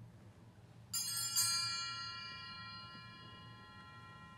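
Altar bell rung at the priest's communion: two strikes about half a second apart, then a bright ringing that dies away slowly.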